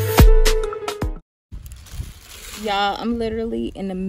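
Background music with a steady beat that stops about a second in, a short gap of silence, then a woman's voice from about three seconds in.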